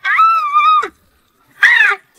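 A high-pitched voice giving a long, held shriek, then, after a short pause, a shorter cry that falls in pitch near the end.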